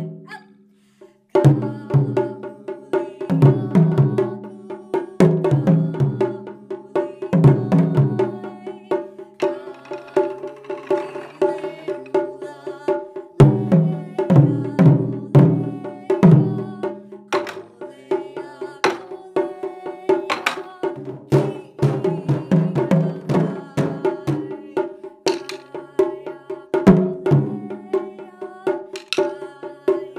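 Large taiko drums struck with wooden bachi by several players together, each hit ringing low, in rhythmic phrases. The playing stops briefly about a second in, then resumes and carries on.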